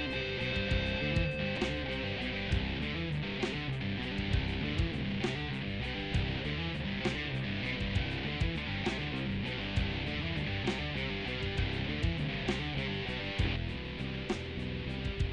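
An electric bass played along to the playback of a recorded band track with drums and guitar, at a steady beat.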